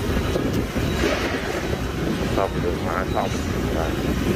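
Outdoor city street noise: a steady rumble of vehicle traffic with wind buffeting the microphone, and a faint voice near the end.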